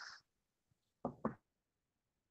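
A brief hiss cuts off right at the start, then two short knocks about a second in, a quarter second apart, before the line goes silent.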